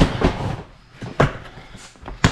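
A few sharp knocks and thuds of items and box lids being handled and set down while unpacking storage boxes and a plastic tote, with rustling between; the sharpest knock comes a little over a second in.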